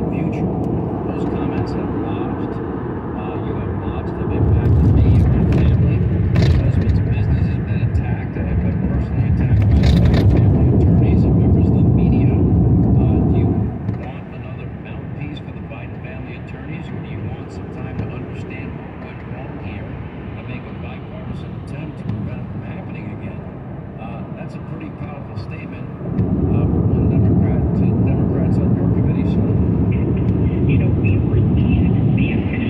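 Road and tyre noise inside a car on a wet freeway, a steady rumble with hiss. It grows louder about four seconds in, drops back for about twelve seconds from the middle, then rises again near the end.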